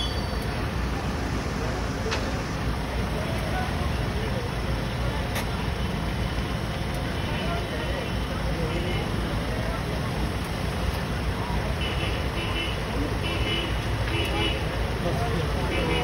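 Steady low rumble of idling vehicle engines in the street, with faint, indistinct voices mixed in.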